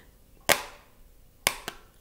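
Three sharp smacks: a loud one about half a second in, then two lighter ones in quick succession about a second later.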